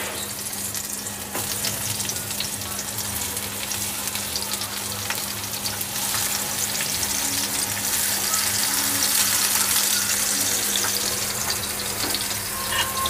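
Eggplant slices sizzling and crackling as they fry in a little oil in a nonstick pan, the sizzle growing gradually louder as more slices are added. A steady low hum runs underneath.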